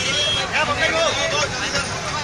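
Crowd chatter: several voices talking over one another above a steady background murmur.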